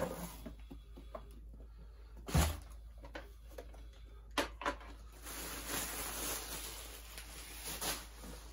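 Handling noises from a cardboard box and a plastic vintage Kenner Slave-1 toy being moved and set down on a tile floor: a dull thud about two and a half seconds in, then two sharp knocks a moment apart around four and a half seconds, with soft rustling in between.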